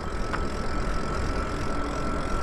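Electric motor of a Lyric Graffiti e-bike running under way, a thin steady whine over a low, steady rumble of wind on the microphone, with a brief click about a third of a second in.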